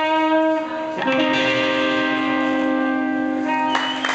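Electric guitar, a Stratocaster-style solid body, playing through an amplifier: one note rings, then a final note is struck about a second in and held, sustaining. Just before the end a crowd breaks into cheering and applause.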